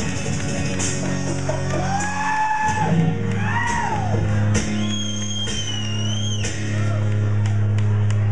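Live rock band playing amplified music, acoustic and electric guitars over steady held bass notes, with high sliding whoops or sung notes rising and falling over the top in the middle of the passage.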